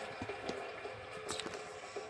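Faint handling noise: a few soft taps and rustles as foam squishy toys are picked out of a plastic basket, over a faint steady hum.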